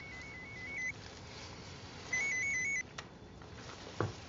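Electronic phone ringtone: a high trill flicking quickly between two close pitches, in two short bursts about a second apart, the second louder. A single click follows near the end.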